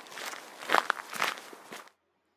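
Footsteps of someone walking outdoors, a few steps at an unhurried pace, cutting off suddenly near the end.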